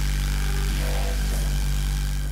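A dramatic music sting from a TV show's score: a loud, sustained low bass drone with a steady hiss of noise over it, held level after a quick build-up.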